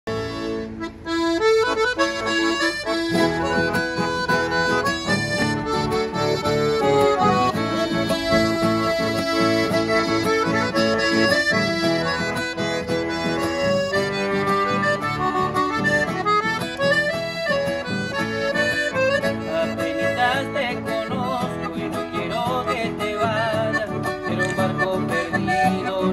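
Piano accordion playing the melody over acoustic guitar accompaniment, starting about a second in: the instrumental introduction of a song, before any singing.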